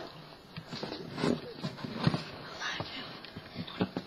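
Irregular soft knocks and rustles, as of a webcam being handled and moved about.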